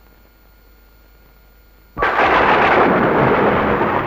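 Faint hiss, then about halfway through a sudden loud crash of noise that starts sharply and carries on for a couple of seconds, like a thunderclap sound effect on a film soundtrack.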